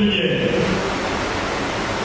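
Steady rushing hiss spread evenly across high and low pitches, with the tail of a man's voice dying away in the first half-second.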